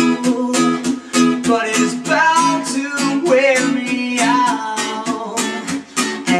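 A song played on strummed acoustic guitar and electric bass, with a man singing the lead vocal over them.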